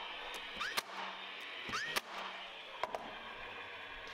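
DeWalt cordless brad nailer firing brads into glued cedar leg pieces: two shots about a second apart, each a short rising motor whir ending in a sharp snap, with a few lighter clicks of wood and tool being handled.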